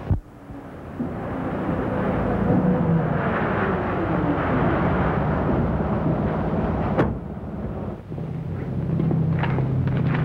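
A motor vehicle's engine running with a noisy rumble; its pitch slides down over a few seconds, as with a vehicle passing. A sharp click comes about seven seconds in, then the engine hum holds steady again.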